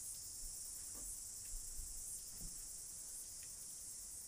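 Steady high-pitched hiss with a few faint soft knocks.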